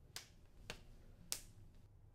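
Two boys' hands striking in a quick handshake routine: three short sharp hand strikes about half a second apart, the last the loudest.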